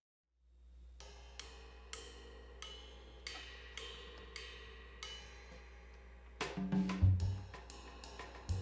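Jazz drum kit played softly with sticks: light cymbal strokes about twice a second over a low sustained rumble, then louder tom hits coming in about six and a half seconds in.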